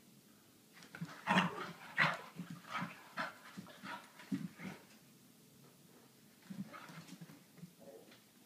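A dog spinning after and biting at her own tail, making a run of short, breathy noises from about a second in until about five seconds, then a second, shorter run near the end.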